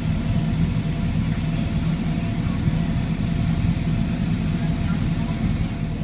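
Tractor engine running steadily under load while pulling a boom sprayer through the field, a low even drone with a faint steady whine above it.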